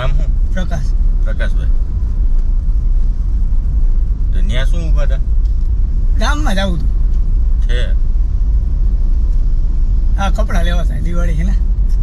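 Steady low rumble of a car driving, heard from inside the cabin, under bursts of men's talk.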